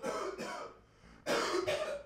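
A man coughing: two rough coughing bursts about a second apart, the second louder.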